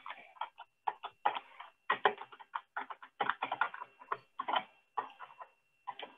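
Typing on a computer keyboard: quick, irregular keystrokes in short clusters with brief pauses between them.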